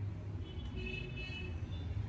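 A steady low rumble, with faint high tones near the middle.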